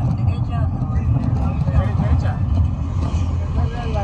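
Steady low rumble of a car driving, heard inside the cabin, with voices talking over it.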